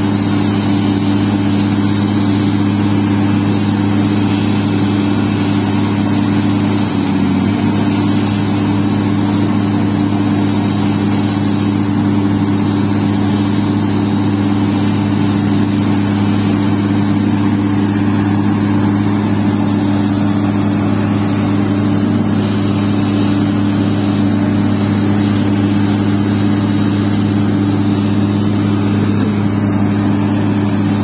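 Hydraulic excavator's diesel engine running steadily, a constant low hum that does not change pitch.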